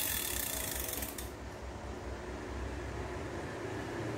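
Metal spinning reel's crank being turned, its rotor and gears whirring with a high hiss, which stops with a click about a second in. A quieter low rumble of handling follows.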